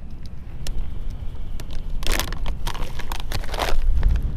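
Plastic pouch of chum pellets rustling as it is opened and a mesh chum bag is pulled out of it, in two bursts, about halfway through and near the end. Steady low wind rumble on the microphone runs underneath.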